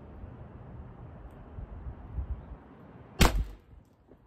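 A T4E TX68 .68-calibre CO2 pistol, fitted with an extended barrel and mock suppressor, fires a single shot about three seconds in: one sharp pop with a brief tail.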